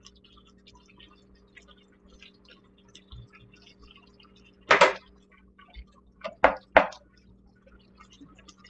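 Thick cheese sauce simmering in skillets, with faint, irregular little pops over a steady low hum. About five seconds in comes a louder noise lasting a moment, then three short, sharp ones in quick succession.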